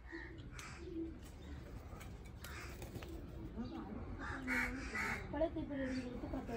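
Crows cawing several times in short, raspy calls, the strongest about four and five seconds in. Faint voices talk underneath in the second half.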